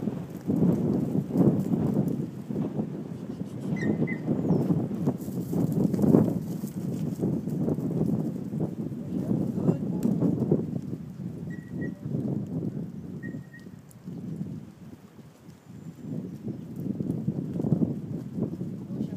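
Goats' hooves and footsteps scuffling and trampling on bare dirt as they are herded by a puppy, an uneven patter that eases off briefly about three-quarters of the way through.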